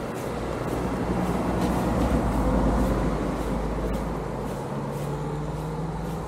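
A motor vehicle passing close by, its engine and road noise swelling to a peak about halfway through and then fading.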